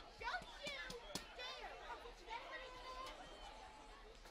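Faint, distant shouting and calls from players on an outdoor soccer field during live play, with a couple of sharp knocks in the first second or so.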